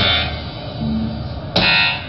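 Live band music: a sharp accented hit at the start and another about a second and a half in, each followed by a buzzy sustained chord, over low bass notes.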